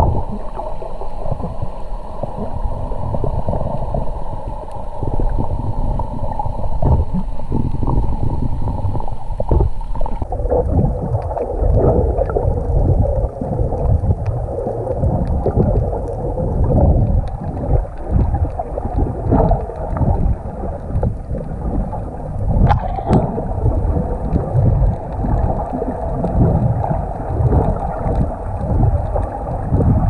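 Water sloshing and gurgling heard underwater through a camera's waterproof housing: a loud, muffled, uneven rumble, with one sharp click about three quarters of the way through.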